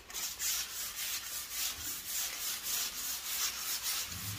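A plastered wall being scraped down by hand in quick, even strokes, about three a second, to take off the old surface before repainting.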